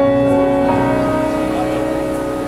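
Live solo piano: a held chord rings on and slowly fades, with a higher note added under a second in.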